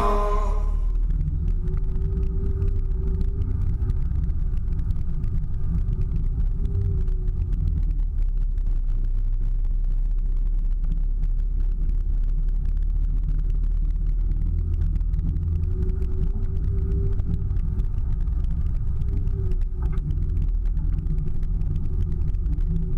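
Four-wheel-drive vehicle driving on a soft sand track, heard from a camera mounted on its body: a steady low rumble of engine and drivetrain, with a faint engine hum that rises a little twice.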